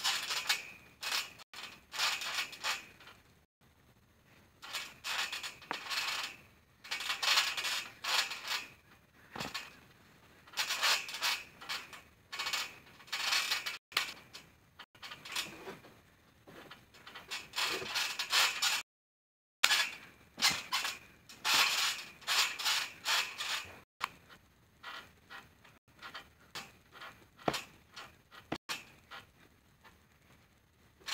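Trampoline springs creaking and squeaking in irregular bursts as a person bounces, lands and rolls on the mat, with a few brief dropouts where the sound cuts out.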